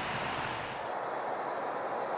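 Steady ballpark ambience under a TV baseball broadcast, an even wash of noise that eases slightly as it goes.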